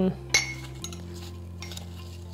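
A metal spoon clinks once against a ceramic mug, with a short ring, then scrapes faintly as it starts stirring chopped apples.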